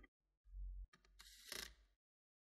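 Small corded electric screwdriver running faintly in two short spells, driving a screw into a laptop's Wi-Fi card.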